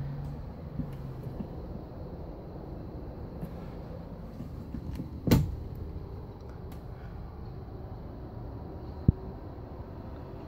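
An RV entry door being handled over a steady low rumble, with one loud thump about five seconds in and a short, sharp latch click about nine seconds in.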